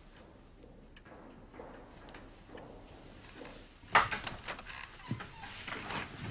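A room door opening with a sharp click and rattle about four seconds in, after a quiet stretch, followed by a few knocks and movement.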